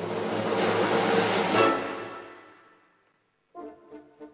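Orchestral ballet music: a loud full chord that swells for under two seconds and then dies away, a moment of silence, then the music starts again softly with a new rhythmic phrase about three and a half seconds in.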